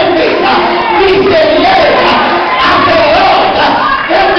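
A preacher shouting his sermon into a microphone in a loud, sung, chanted style, pitch rising and falling in long held phrases, over a congregation's voices calling back.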